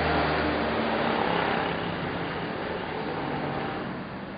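Roadside traffic noise, with a motor vehicle's engine rumble that is loudest in the first second and then fades as it passes.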